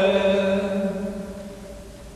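A man's voice holding one chanted note, which ends at the start and dies away in the church's long reverberation over about a second and a half.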